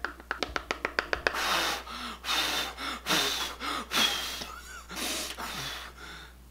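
Rapid light tapping, about eight taps a second for a little over a second, as an eyeshadow brush is tapped against the palette. It is followed by a run of breathy puffs of air.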